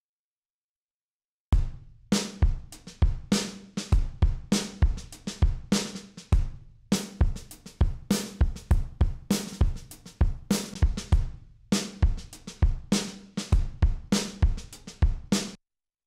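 Soloed recorded drum kit from a mix, with kick, snare, hi-hat and cymbals playing a steady groove, run through Universal Audio's Verve Analog Machines tape emulation on its 'warm' setting. The processing thickens the drums and takes away some top end. The beat starts about a second and a half in and stops just before the end.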